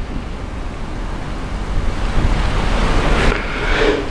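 Steady rushing background noise with a low rumble on the microphone, swelling slightly near the end.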